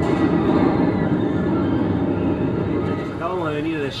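A steel roller coaster train running along its track: a steady, loud rumble with no clear pitch. A man's voice starts near the end.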